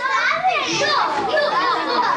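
Several children talking and calling out over one another in high voices.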